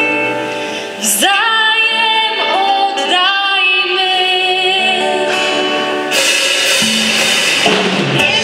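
Female voices singing a Polish Christmas carol with vibrato, over band accompaniment; a cymbal rings out from about six seconds in.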